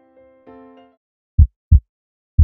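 Soft music notes fade out in the first second; then, near the end, a heartbeat sound effect gives one loud, low double thump, lub-dub.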